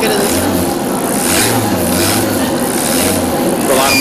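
A bicycle on a generator stand being pedalled, its rear wheel and drive whirring steadily, with a low hum that comes and goes with the pedalling. Children's chatter echoes in a busy gym behind it.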